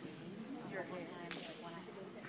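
Background voices echoing in a gym, with a single sharp smack about a second and a third in.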